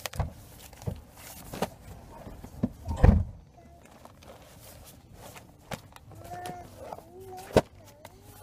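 A stack of folded newspapers being handled and squared: paper rustling with a series of sharp knocks, the loudest a heavy knock about three seconds in.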